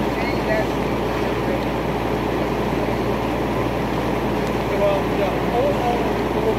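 Fire engine's engine and pump running steadily, a dense constant rumble with no breaks, with faint distant voices over it.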